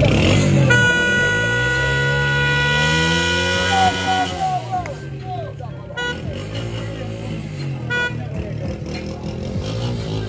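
A vehicle horn sounds one long toot of about three and a half seconds, then two short beeps about six and eight seconds in. Under the long toot, a small motorcycle engine revs up and back down.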